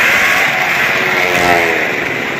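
Car and motorcycle engines revving as the vehicles circle the vertical wooden wall of a well-of-death stunt drum, the engine pitch rising and falling.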